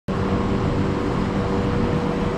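Steady rushing noise of water running down a water coaster slide, with a constant low machinery hum under it.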